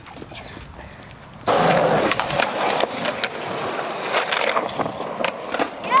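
Skateboard wheels rolling on concrete, starting suddenly about a second and a half in, with several sharp clacks of the board.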